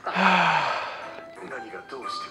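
A woman's heavy sigh: a loud, breathy exhale with a low voiced tone that falls in pitch, dying away within about a second. Quiet music plays behind it.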